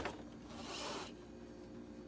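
A brief soft rubbing sound, about half a second long, a little after the start.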